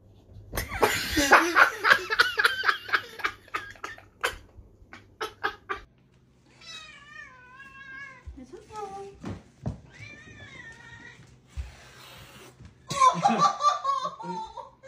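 A burst of loud laughter, then a cat meowing in several drawn-out, wavering calls, and loud laughter again near the end.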